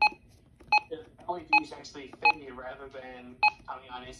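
Radio Shack 12-382 weather radio giving five short electronic key beeps, irregularly spaced, one for each press of its front buttons as its settings menu is stepped through.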